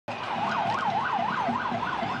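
Vehicle siren on a fast yelp, its pitch sweeping up and down about four times a second.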